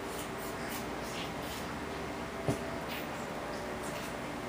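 Soft scratching and rubbing of a baby's hands on a fabric couch cushion, with one sharp click about two and a half seconds in.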